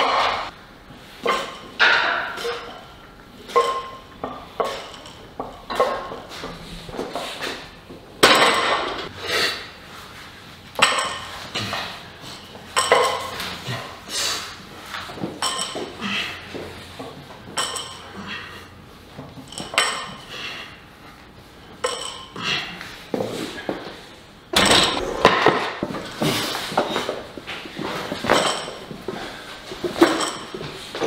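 Irregular metallic clanks and knocks from a barbell, bumper plates and a steel rack: plates being loaded onto the bar's sleeves and the bar knocking on the rack during push-press sets.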